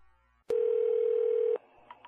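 Telephone line tone heard over a phone call: one steady mid-pitched tone lasting about a second, starting and stopping with a click.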